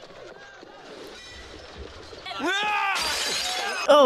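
Glass smashing on a film soundtrack: a shout, then a long crash of shattering glass about three seconds in, lasting nearly a second.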